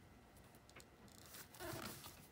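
Near silence with faint paper sounds: a few light ticks, then a soft rustle near the end as hands press and smooth a paper flower picture onto a journal page.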